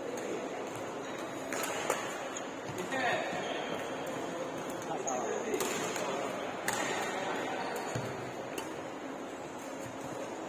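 Badminton rackets striking a shuttlecock during a doubles rally: several sharp, irregularly spaced hits over a steady background of voices.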